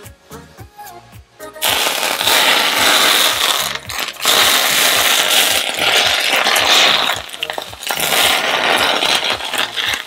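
Smoking-hot peanut oil poured from a saucepan onto chopped cilantro and ginger over steamed fish, sizzling and spattering loudly from about two seconds in. The splatter comes from cilantro that was not dried well before the oil went on.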